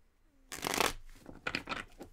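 A deck of tarot cards being riffle-shuffled by hand: two quick rattling riffles, the louder about half a second in and a second one near the end.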